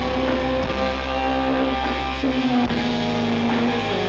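A live rock band playing an instrumental passage of an original song, with guitars holding long chords over a low bass line.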